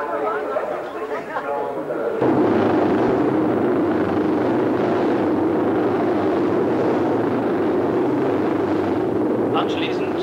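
A voice for about the first two seconds, then a loud, steady rumble of several classic racing motorcycle engines running together, starting suddenly about two seconds in.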